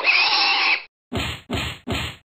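Pig sound effect: one harsh squeal lasting most of a second, then three short grunts in quick succession.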